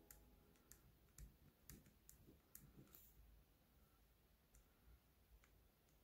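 Near silence with faint, scattered clicks and taps of a pen writing on a paper notepad, most of them in the first three seconds and a few near the end.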